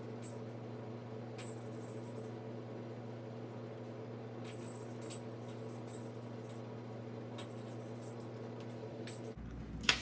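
Quiet, steady low hum of room tone, with a few faint soft ticks.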